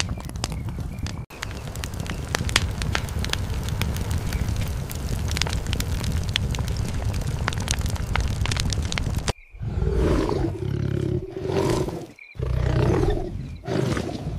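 Campfire crackling with many sharp pops over a low rumble. About nine seconds in it cuts off suddenly, and a tiger growls in four rough bursts.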